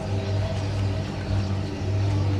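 A steady low hum from a running engine.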